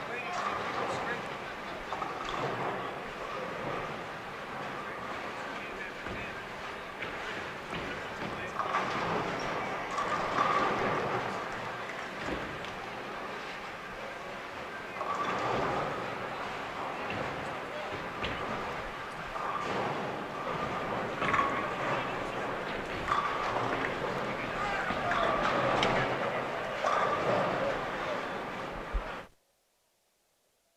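Bowling-hall din during a tournament: steady crowd chatter with balls rolling and pins clattering on many lanes, plus occasional sharper crashes. The sound cuts off suddenly near the end.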